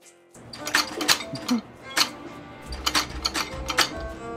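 Music that cuts off under a second in, then the metal shutter of a naval signal lamp being worked by its lever: a run of sharp, irregular clacks, with a low rumble joining near the end.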